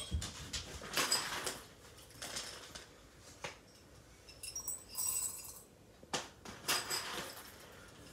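Coffee bag rustling and crinkling while whole coffee beans are scooped out, in short irregular bursts with a few light clicks.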